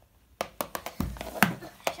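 Small toy objects set down and tapped by hand on a wood-look laminate floor: a quick run of sharp clicks and knocks starting about half a second in, with a duller thump around the middle.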